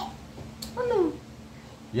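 A young child's voice giving one short cry about half a second in, its pitch falling steeply, much like a meow.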